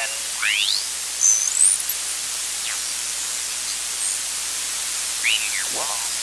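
Shortwave static hiss from a 12AU7 regenerative receiver being tuned across the 40-meter amateur band, with brief sliding whistles as the tuning passes over signals. Near the end a sideband voice begins to come in, still garbled.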